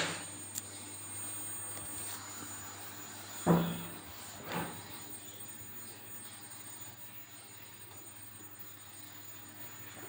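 Low steady background hum, with a sharp click at the start and two short knocks about three and a half and four and a half seconds in.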